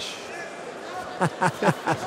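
Mostly speech: a few short syllables from a man's voice on the TV commentary about a second in, over steady arena crowd noise.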